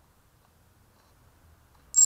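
Near silence, then a single short, sharp click right at the end.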